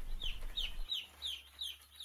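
Day-old broiler chicks peeping: a rapid string of short, high cheeps, each falling in pitch, several a second.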